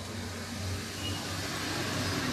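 Low, steady rumble of background noise that grows slightly louder.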